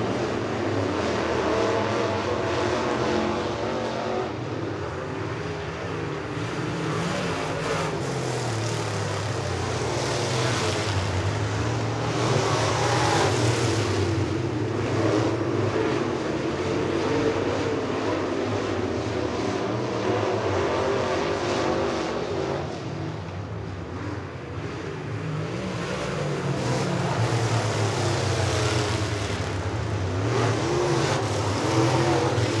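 Several dirt late model race cars' V8 engines running laps around a dirt oval, the engine note rising and falling as the cars pass and go through the turns. The sound dips about three-quarters of the way through, then builds again.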